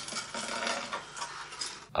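Electric model train running along its track, motor and gears whirring with a fine rapid rattle; the sound cuts off abruptly near the end.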